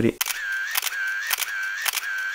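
Camera shutter firing in a rapid burst: sharp clicks about three a second, each followed by a short whir.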